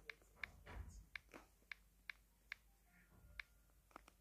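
Faint, irregular taps of typing on a tablet's on-screen keyboard, about eight or nine short clicks over four seconds.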